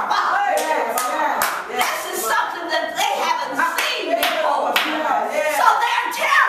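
Hand clapping, about two claps a second, over a woman's voice.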